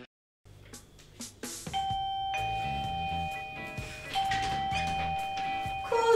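Electronic two-tone doorbell chime, a higher note falling to a lower one, rung twice about two and a half seconds apart, over a soft music bed.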